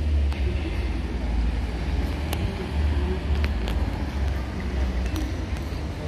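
Outdoor street ambience dominated by a gusty low rumble of wind buffeting the microphone, with faint voices in the background and a few short clicks.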